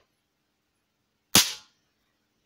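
A bank of electrolytic capacitors, charged to almost 300 volts by a camera flash circuit, is shorted across needle-nose pliers: a single loud, sharp spark bang about a second and a half in.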